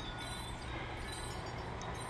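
Distant heavy construction machinery, a diesel engine running steadily with a low hum heard as a faint, even rumble.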